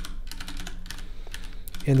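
Typing on a computer keyboard: a quick run of keystroke clicks.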